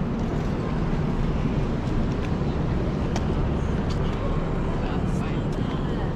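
City street ambience: a steady rumble of traffic with passers-by talking in the background.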